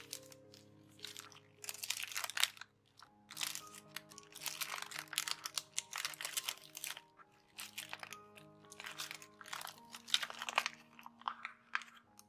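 Tracing paper and origami paper crinkling and rustling in repeated bursts as the pockets of a paper sticker holder are handled and flipped, over background music with held notes.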